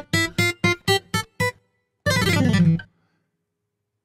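Sampled acoustic guitar from the SampleTank app, played from a keyboard. A quick run of about seven single plucked notes, each dying away fast, is followed about two seconds in by a fuller chord. The notes sound with little delay.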